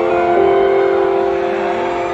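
Piano chord held and ringing out slowly, with another note coming in less than half a second in, played live on stage in an arena.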